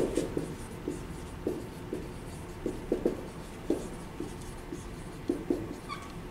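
Dry-erase marker writing on a whiteboard: a dozen or so short, irregularly spaced strokes as a word is written out.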